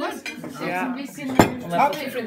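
Cutlery and plates clinking at a dinner table, with one sharp clink about one and a half seconds in, over background chatter.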